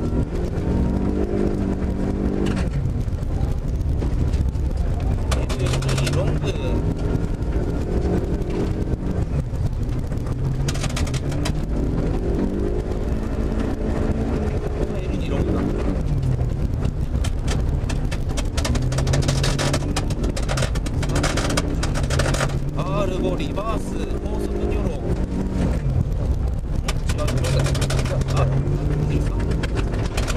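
Rally car engine heard from inside the cabin, pulling hard through the gears on a snow stage: its pitch climbs and then drops back at each shift, again and again.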